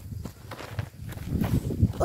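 Footsteps on a dry dirt track, with low knocks and rustling from the phone being moved about, louder in the second half.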